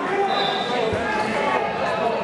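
Overlapping voices of spectators and coaches talking and calling, echoing in a large gym, with one dull thump about a second in.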